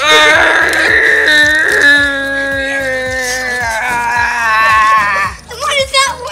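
A child's voice holding one long, loud wailing cry for about five seconds. It is rougher for the first two seconds, then steadier and a little lower in pitch, and breaks off near the end.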